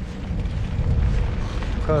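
Wind rumbling and buffeting on the microphone of a camera carried on a bicycle along a dirt track, a steady low rumble; a man's voice begins just at the end.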